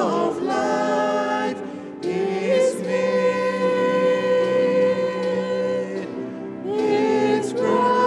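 Church choir of men's and women's voices singing a hymn together in long held notes, with a brief break between phrases about two seconds in and another near the end.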